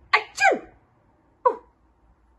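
A woman's acted 'ah-choo' sneeze: a sharp intake burst, then a falling 'choo', with a short second burst about a second and a half in.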